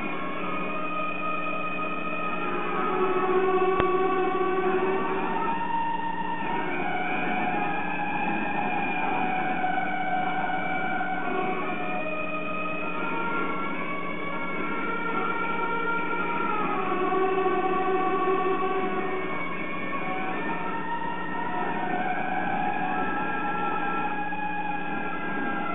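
Slow background music of long held notes, several sounding together and moving from pitch to pitch every second or two, over a steady low hum.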